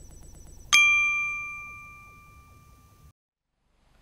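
Logo-sting sound effect: a single bright bell-like ding about a second in that rings out and fades over about two seconds, laid over the dying tail of an earlier hit with faint fast ticking. The sound cuts off about three seconds in.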